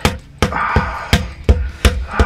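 Tok Sen massage: a tamarind-wood mallet striking a wooden wedge held against the back, six sharp knocks in a steady rhythm, about three a second.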